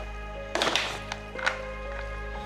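A wooden spoon scraping and knocking in a disposable aluminium foil baking pan as macaroni and shredded cheese are stirred: a longer scrape about half a second in and a short knock near the middle. Background music with steady held notes plays throughout.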